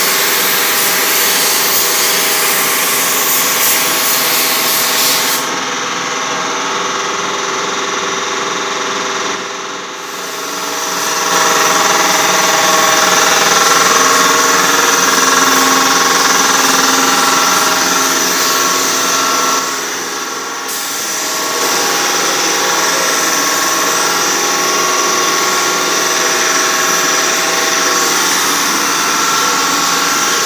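Paint spray gun hissing as a light coat of paint goes onto car bodywork, over a steady machine hum. The hiss stops about five seconds in and resumes near ten seconds, then drops out briefly around twenty seconds.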